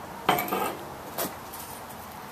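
A stemmed beer glass set down on a patio table with a ringing clink, then a shorter knock about a second later.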